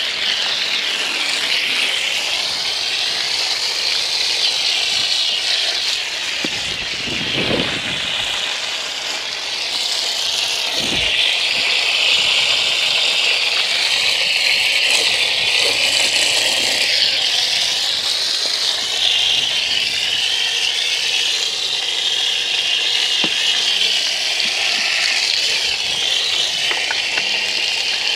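Water from an open garden hose at ordinary tap pressure spraying onto a dirt bike and splattering off its plastics, wheel and ground, a steady hiss, rinsing off soap foam and loosened mud.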